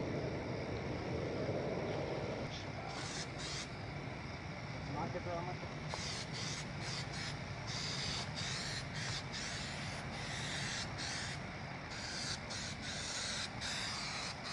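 Aerosol paint stripper spraying from a Dupli-Color can in a string of short hisses, mostly from about six seconds in, with two brief sprays a few seconds earlier. A steady low rumble runs underneath.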